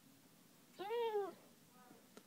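Basset hound crying: one whining cry about a second in that rises and falls in pitch, then a fainter short whine near the end. She is upset.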